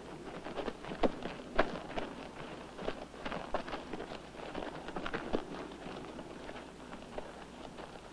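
Donkeys' hooves clopping unevenly on stony ground as the animals walk, a scatter of irregular knocks several times a second.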